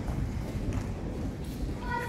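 Dancers' footsteps on a stage floor: a few separate knocks and thuds about a second apart over a low rumble, with young voices starting to speak near the end.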